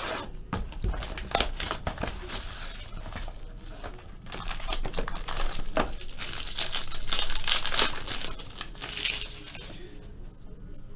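Plastic wrapping on a sealed trading-card box crinkling and tearing as it is unwrapped by hand, with a louder stretch of crackling about five to nine seconds in.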